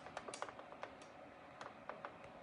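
Faint, sharp clicks and taps, a quick cluster in the first second and a few spaced ones after: the recording phone and its stand being handled as it is reached for to stop the recording.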